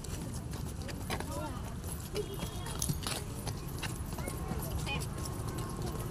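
Small children's voices chattering and calling out in a group, in short high snatches, over a steady low rumble with scattered clicks and knocks.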